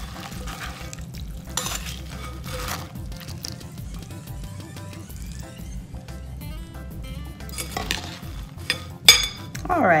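A metal spoon stirring herb stuffing mix in a ceramic bowl as chicken broth is poured in: scattered scrapes and clinks of the spoon against the bowl, with a sharper clink shortly before the end.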